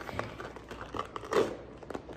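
Silicone oven mitts gripping and prying at a durian's hard, spiky husk, making irregular crackling and scraping with a louder crackle about a second and a half in.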